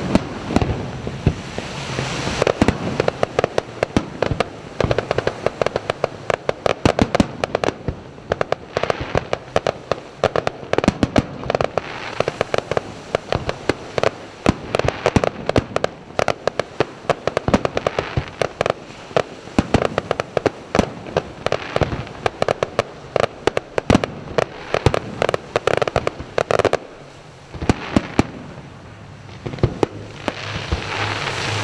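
Fireworks display: a rapid, continuous run of bangs and crackling as shells burst, easing off briefly a few seconds before the end.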